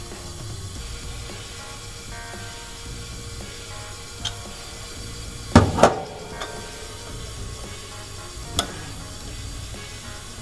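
Metal clicks and knocks from hand tools on the cylinder head of a Ford 460 big-block as a lever-type valve spring compressor is set over a valve spring. The loudest is a pair of knocks a little past the middle. Soft background music plays throughout.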